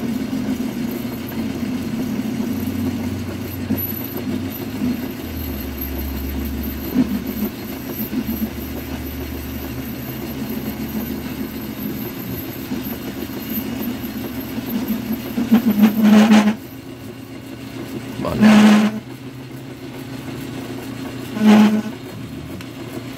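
Small metal lathe running under a turning cut, a steady motor and spindle hum. Near the end come three short loud bursts a few seconds apart, which he takes as a sign that he may be taking a little too much material.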